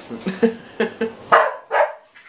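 A dog barking in a quick run of short barks; the two near the end are the loudest.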